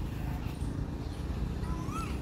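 Outdoor park ambience: birds calling over a steady low rumble, with one whistled call rising and falling near the end.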